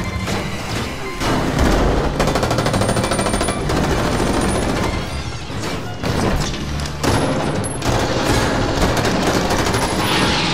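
Bursts of rapid automatic gunfire sound effects over dramatic background music.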